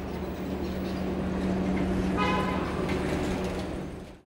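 Outdoor street ambience: a steady low traffic rumble and hum, with a brief high-pitched tone about two seconds in, fading out at the end.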